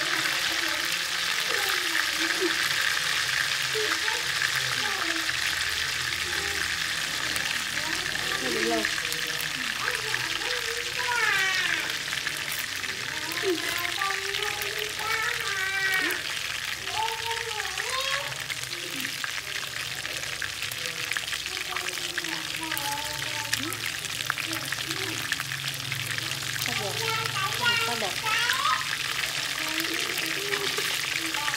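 Catfish steaks shallow-frying in hot oil in a pan, a steady sizzle throughout. Voices in the background come and go under it.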